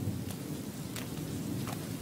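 Steady rain falling, with a low rumble of thunder underneath.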